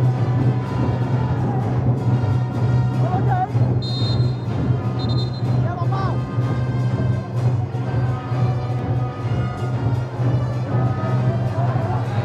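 Drum-led music from the stands: an even drum beat over a continuous low hum, with pitched tones that now and then slide. Two short high whistle-like tones sound about four and five seconds in.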